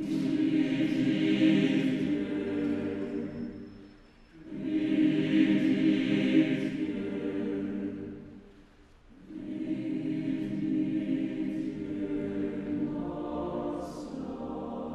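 Mixed choir of men and women singing sustained chords in three phrases, each lasting about four seconds, with a short breath-pause between them.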